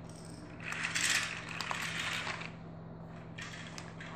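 Paper pages of a toy building-set instruction booklet being turned: a rustle lasting about two seconds with a few small clicks in it, then a shorter rustle near the end.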